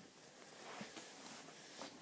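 Faint room noise with one soft tap a little under a second in, as plastic model horses are handled.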